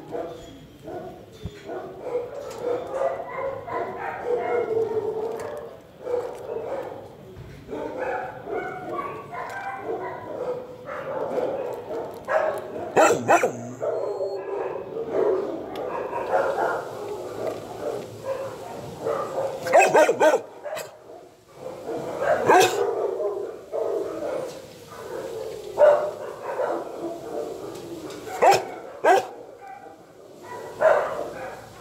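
Dogs barking in a shelter kennel area, overlapping almost without a break, with several louder sharp barks standing out across the middle and second half.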